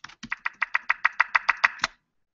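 Typing on a computer keyboard: a quick, even run of about fifteen keystrokes, roughly eight a second.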